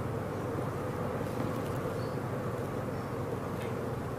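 A steady, unchanging low hum with a faint buzzing tone in it, no speech.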